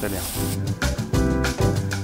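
Background music with a quick, even beat and sustained keyboard notes, coming in about half a second in, after a single spoken word.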